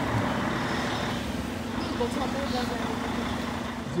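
Street traffic noise: a motor vehicle's engine runs with a steady low hum under a broad roadside rush, with faint voices in the background.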